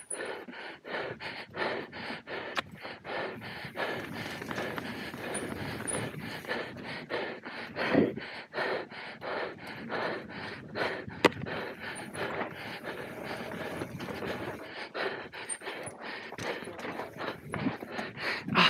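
Mountain-bike rider panting hard in quick rhythmic breaths while descending a dirt trail at race pace, mixed with tyre and bike noise over the ground. A few sharp knocks from the bike come through, one about eleven seconds in.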